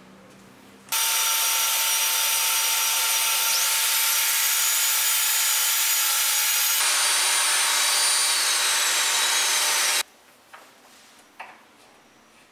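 Portable mortiser's motor running at high speed as it cuts a mortise into the end of a wooden board. A loud, high whine starts suddenly, climbs sharply in pitch after a couple of seconds, slides back down later and cuts off abruptly. A few light knocks of handled wood follow.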